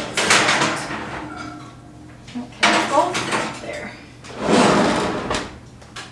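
Metal baking pans scraping onto wire oven racks and the racks sliding in, in three rattling bursts.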